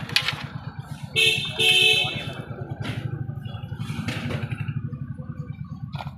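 A vehicle horn honks twice in quick succession about a second in, over an engine running with a steady low throb. A few sharp clicks are heard.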